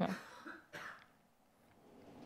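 A short spoken "yeah", then a single brief cough under a second in.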